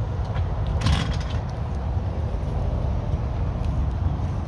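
Uneven low outdoor rumble, like wind on the microphone and passing traffic, with a brief rustle about a second in.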